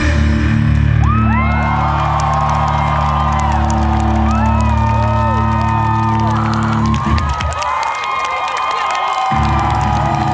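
A live rock band's final chord is held as a loud, sustained drone of amplified guitars and bass, with the crowd whooping and cheering over it. Most of the drone drops away about seven seconds in, and the rest cuts off shortly before the end.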